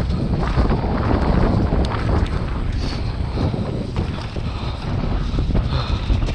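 Wind buffeting the microphone of a mountain bike's action camera during a fast downhill run, over the steady rumble of knobbly tyres on a dirt trail and scattered clicks and rattles from the bike.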